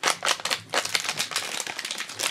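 Foil pouch crinkling and tearing as it is pulled open by hand, a dense run of quick crackles.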